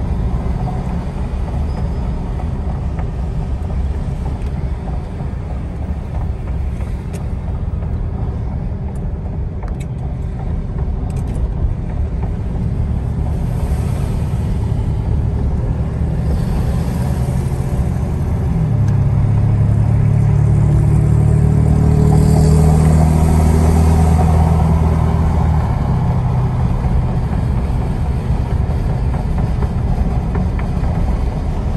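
Car driving, heard from inside the cabin: a steady low rumble of road and engine noise. About two-thirds of the way through, an engine note rises and holds for several seconds, then eases back.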